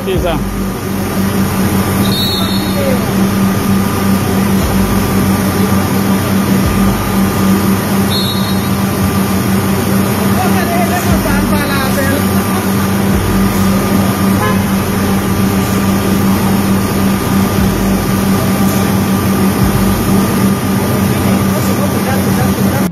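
Steady noise of idling and passing vehicles, with a constant low hum underneath and faint voices now and then.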